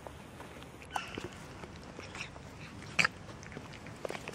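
Two cats eating from a small plastic tub of food, with small clicks of chewing and nudging at the tub. A short cat call comes about a second in, and a brief sharp noise, the loudest sound, about three seconds in.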